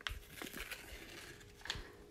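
Foil seal on a pint of frozen dessert being peeled open: faint crinkling and tearing, with a few light clicks from the container.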